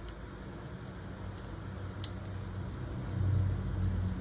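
Two light plastic clicks from the parts of a headband magnifier being handled, over a low steady rumble that grows louder about three seconds in.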